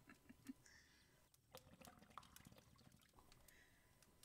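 Faint bubbling of a hookah's ice-water base as smoke is drawn through it, with a soft exhale beginning near the end.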